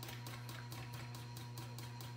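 Small brush being raked through a clump of red fox tail hair, combing out the underfur: a fast run of faint, scratchy strokes over a steady low hum.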